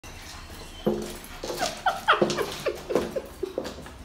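A dog yapping in a quick series of about a dozen short, high calls that sweep in pitch.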